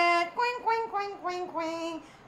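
A voice singing a short sing-song run of notes, held steady at first and then stepping through several brief notes, softer than the talk around it.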